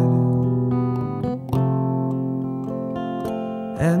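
Acoustic guitar strumming chords and letting them ring. A new chord comes in about one and a half seconds in and rings slowly down.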